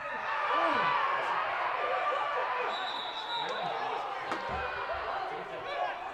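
Several men shouting at once as a goal-mouth chance ends. The shouting starts suddenly and loud, then slowly fades. A short, high referee's whistle blast sounds about three seconds in.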